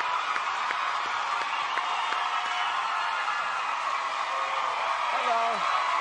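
Large studio audience cheering and screaming, with scattered claps and a few individual whoops near the end.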